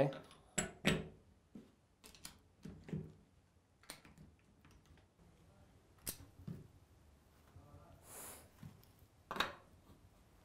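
Metal HSK-A63 work holders being seated in and lifted from a manual clamping head by hand: a few sharp metal clicks and knocks, the loudest about a second in, then scattered lighter taps.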